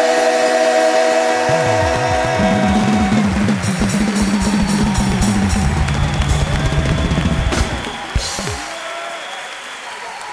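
Live band playing the closing bars of a Fuji song: a held chord, then drums with gliding pitches, which stop about eight seconds in. Audience cheering and applause run under it and carry on after the music ends.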